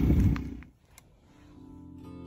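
Low rumbling noise on the microphone stops about half a second in. After a short gap with a single click, guitar music fades in near the end.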